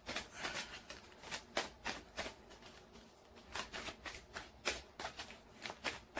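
A tarot deck being shuffled by hand: a quiet, irregular run of soft card clicks and flicks, pausing briefly about halfway through.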